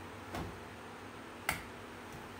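Two sharp smacks about a second apart, the second crisper and louder than the first.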